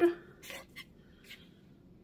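A woman's spoken word ends right at the start, then a quiet room with a few faint, brief handling noises from hands and the bowl of dough.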